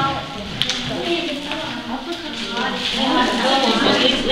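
Indistinct talk from several voices around a table, with a short sharp click about half a second in.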